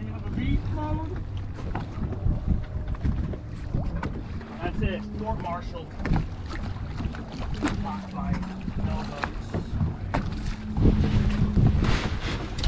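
Wind buffeting the microphone on an open boat at sea, over a low steady hum from the idling boat. Faint voices come and go, and louder knocks and handling noise rise near the end.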